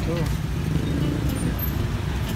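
Steady low rumble of road traffic, with faint voices over it.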